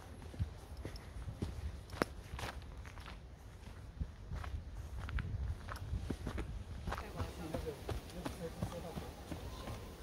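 Footsteps of a hiker walking on a dirt forest trail strewn with dry leaves and stones, irregular scuffs and crunches over a low rumble.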